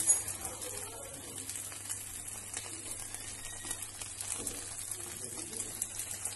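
Beef burger patties sizzling in a frying pan, a steady crackling hiss, while a slotted spatula presses down on them, with a short knock right at the start.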